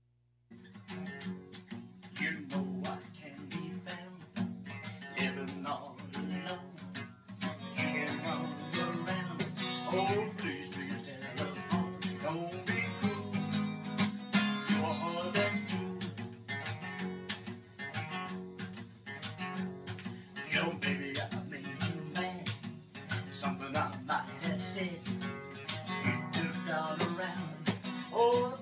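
Acoustic guitar strummed in a steady rhythm, starting about half a second in.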